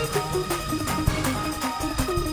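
Live gospel band music: drums keep a steady beat under held keyboard chords.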